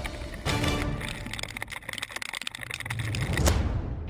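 Theme music: after a brief swell it drops to a fast run of ticking beats that builds in loudness to a sharp hit near the end.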